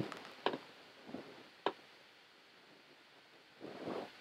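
Two sharp computer mouse clicks a little over a second apart, over quiet room tone, with a soft sound near the end.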